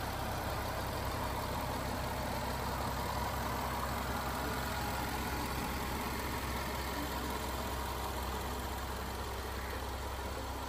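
2015 Land Rover LR4's supercharged 3.0-litre V6 idling steadily, heard from above the open engine bay.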